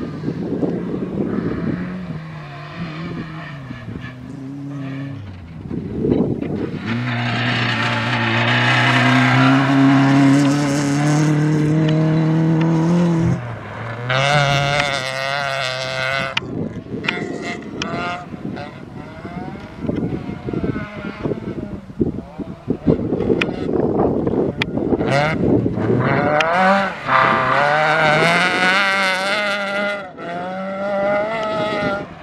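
Rally car engines held at high revs as cars run a dirt stage. The pitch climbs through a gear and drops sharply at a shift about 13 seconds in. In the middle stretch there is a run of sharp cracks and rattles, then another engine revs up near the end.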